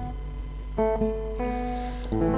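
Acoustic guitar played softly: a chord dies away, then fresh chords are plucked twice in the second half, each left to ring.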